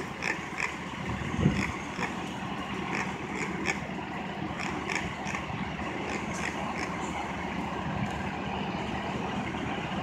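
A fire engine's motor idling as a steady hum under general city-street traffic noise, with faint scattered clicks.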